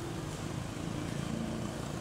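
Steady low rumbling background noise with a faint hum.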